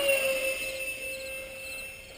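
Nitroplanes 64 mm electric ducted-fan F-18 RC jet whining in flight. Its pitch drops slightly early on, then holds steady as the sound fades.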